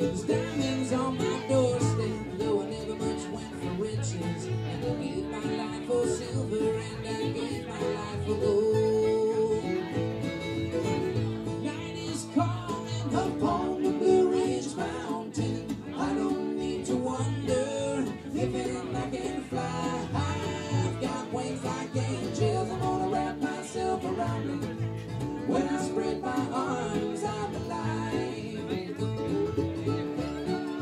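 Acoustic bluegrass string band playing live: strummed acoustic guitar, mandolin, upright bass and fiddle.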